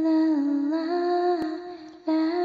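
A voice humming a slow, wordless tune in long held notes. The pitch dips a little and rises again, and the phrase trails off near the end.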